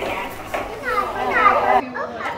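Voices of people talking around a table, mixed with children's voices and play. The background hiss drops out abruptly near the end.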